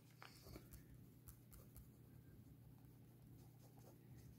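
Faint scratching of a ballpoint pen writing on squared notebook paper: a run of small, irregular pen strokes.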